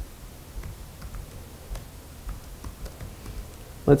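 Keystrokes on a computer keyboard: a string of faint, irregularly spaced taps as a terminal command is typed out.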